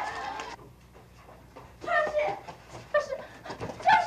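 A woman's distressed voice, crying out and sobbing in short, breathless cries with pauses between, loudest near the end.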